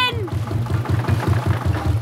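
Cartoon canal boat engine chugging steadily in a quick, low, even rhythm as the boat moves slowly forward. A voice trails off right at the start.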